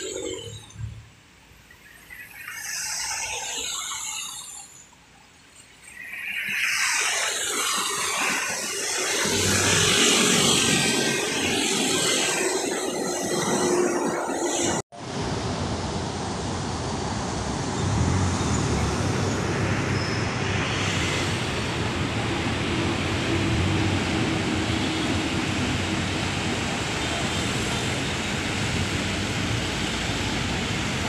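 Road traffic: vehicles pass close by, loud for several seconds from about six seconds in. After a sudden cut about halfway through, the steady noise of heavy traffic of cars, vans and motorcycles continues.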